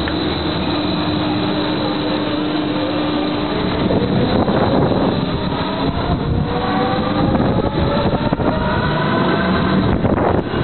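Amusement ride in motion, heard from a seat on board: a rushing noise throughout, with a steady hum that gives way about four seconds in to a slowly rising whine from the ride's drive as it picks up speed.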